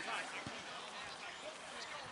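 Distant, indistinct voices of rugby players and spectators calling across an open pitch, overlapping one another, with a dull thump about a quarter of the way in.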